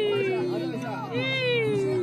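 A high-pitched voice making two long, drawn-out calls, each sliding slowly downward in pitch, over a steady background of sustained low tones.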